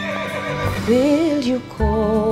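A horse whinnies once, a wavering call about a second in, over background music. Near the end the music drops briefly and a new melody of held, wavering notes comes in.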